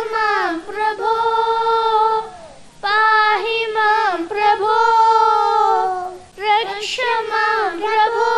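Children singing a devotional prayer song in long held melodic notes, with two short breaks between phrases.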